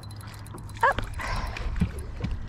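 Water splashing as a landing net scoops a hooked bass out at the surface, a short burst just past halfway, over a steady low rumble.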